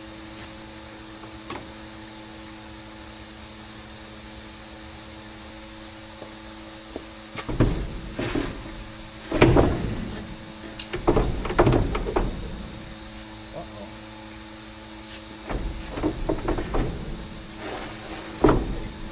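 Truck batteries being handled and set into a steel battery box. Irregular clunks and knocks come in two spells, the first about halfway through and a shorter one near the end, over a steady low hum.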